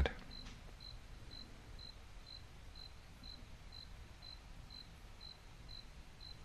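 Faint, steady ticking, short high pips about two a second, over a low room hum.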